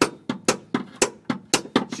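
Hand hammer striking the side of a rear leaf spring's front eye bolt in quick repeated blows, about four a second, alternating heavier and lighter hits, to drive the bolt out. The bolt is not rusted fast and begins to move under the blows.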